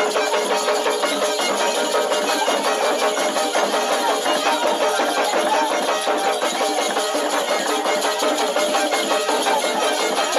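Fast, evenly driving percussion music with a held melodic line above it, the accompaniment to a Zaouli mask dance.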